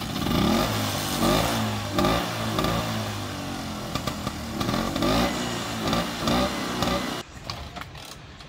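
Vintage Vespa's small two-stroke engine running and being revved over and over, the pitch rising and falling in surges about a second apart. The sound stops abruptly near the end.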